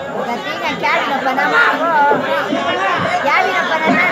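Several people talking over one another in lively chatter, with no music playing.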